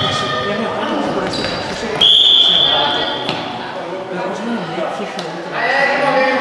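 A referee's whistle, one steady high blast a little over a second long, about two seconds in, ringing in a large indoor sports hall. Around it are players' voices and a few knocks of the ball on the wooden court.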